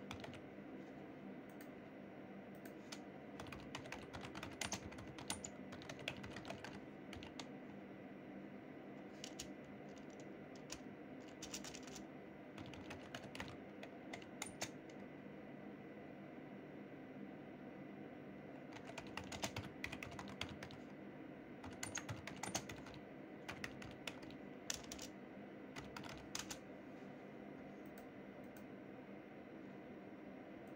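Typing on a computer keyboard: several runs of quick key clicks with short pauses between them, over a faint steady hum.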